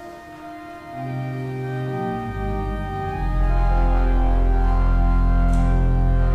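Church pipe organ playing the introduction to the opening hymn of Mass, in sustained held chords. A bass line comes in about a second in, and very deep pedal notes join a little after two seconds, swelling to a full, loud sound.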